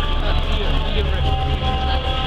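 Music with a loud bass line whose low notes change every half second or so.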